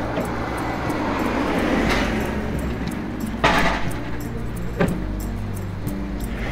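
A car passing on a street, its tyre and engine noise swelling to a peak about two seconds in and then fading, with a short burst of noise about three and a half seconds in. Soft background music runs underneath.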